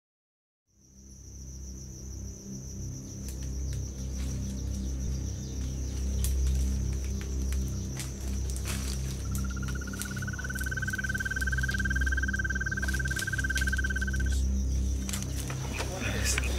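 Night insects trilling: one steady high trill throughout, and a second, lower trill, rising slightly in pitch, from about nine seconds in until about fourteen seconds in. Low music plays underneath, after a silent first second.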